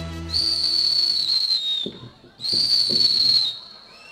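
Two long, steady, high-pitched whistle blasts, each a little over a second, with a short gap between them and the pitch dropping slightly at the end of each. The last low notes of the ensemble die away under the first blast.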